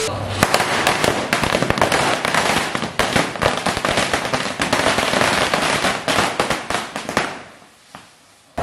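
Firecrackers going off in a rapid, irregular series of sharp bangs for about seven seconds, thinning out and dying away near the end.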